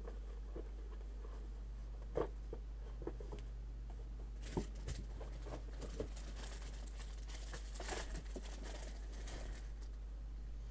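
Paper edges being inked: scattered light taps and short brushing rubs of an ink pad against paper, with a longer rub about eight seconds in. A steady low hum runs underneath.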